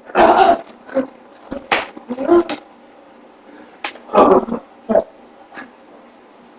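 Short, loud growling grunts from people play-fighting, coming in about five separate bursts, with a couple of sharp slaps or knocks in between.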